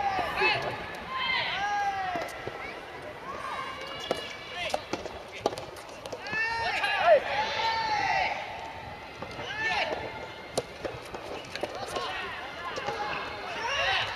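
Soft tennis doubles players shouting calls to each other, in bursts through the point. Sharp pops of the soft rubber ball being struck by rackets come between the shouts, the loudest about seven seconds in.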